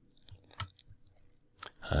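A few faint, scattered small clicks during a pause in speech.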